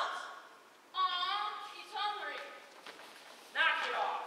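Young actors speaking lines on stage, picked up from out in the auditorium. One phrase comes about a second in and another near the end, with a short pause between.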